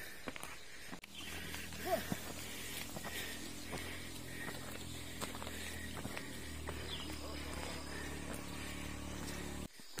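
Footsteps of hikers walking up a rough asphalt road, over a steady low hum.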